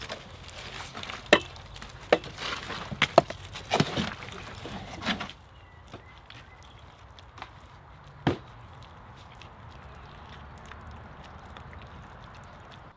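Gloved hands slapping and pressing wet cob, a clay, sand and straw mix, onto a woven hazel wattle wall: a run of sharp slaps in the first five seconds, then a single knock a few seconds later.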